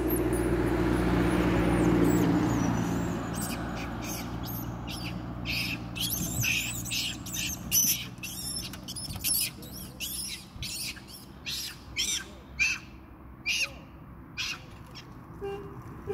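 A vehicle's engine rumble fades away over the first few seconds. Then comes a run of short, high-pitched chirping calls, about one or two a second.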